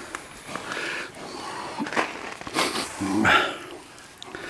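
A young brown bear shifting about in straw against its cage bars, with short breathy bursts and a brief low voiced sound about three seconds in.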